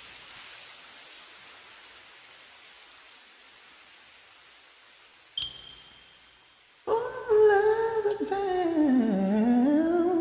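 Faint hiss fading away, with a brief click about five seconds in. Then, about seven seconds in, a singer's voice comes in humming a long wordless note that dips in pitch and climbs back up.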